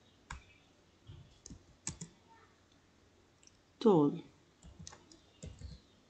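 Computer keyboard keystrokes: single key clicks at uneven intervals as a word is typed.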